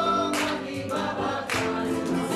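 Music: a group of voices singing together in chorus, with two sharp beats about a second apart.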